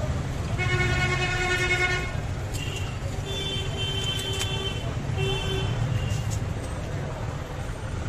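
Busy street traffic: a steady low engine rumble with vehicle horns honking. There is one long horn blast about a second in, then several more toots of different pitch.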